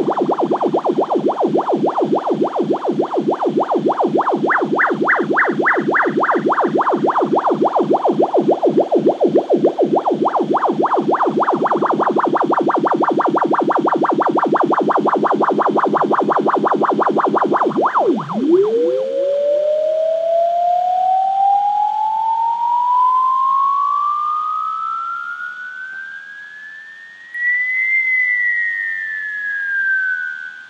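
Synthesizer music: a distorted, rapidly pulsing synth tone whose brightness sweeps up and down. About 18 seconds in, the pulsing stops and the tone dips, then rises in one long slow glide to a high peak near the end and begins to fall.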